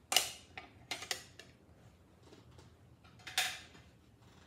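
Objects being handled: a sharp knock just after the start, a couple of lighter clicks around one second, and a short rustling scrape a little past three seconds.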